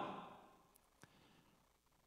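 Near silence: room tone, as the tail of a man's voice fades out in the first half second, with one faint click about a second in.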